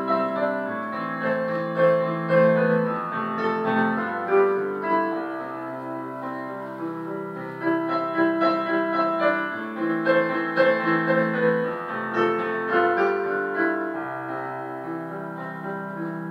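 Background music: a piano playing sustained chords and a melody.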